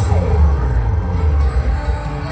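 Loud amplified live band music from an outdoor stage PA, with a heavy bass and a falling slide in the melody just after the start.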